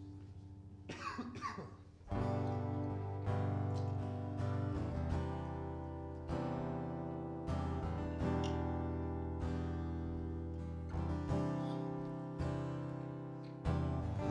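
A brief handling noise, then about two seconds in a worship band starts a slow instrumental song intro: acoustic guitar chords with keyboard, struck roughly once a second and left to ring.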